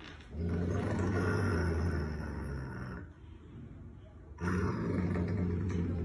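A dog growling low in two long growls, the second starting about halfway through after a short pause.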